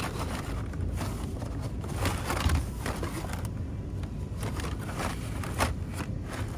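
Carded Hot Wheels blister packs, cardboard backs and plastic bubbles, rustling and scraping against each other as a hand rummages through a bin of them. The rustles come irregularly, louder about two seconds in and again near the end, over a steady low rumble.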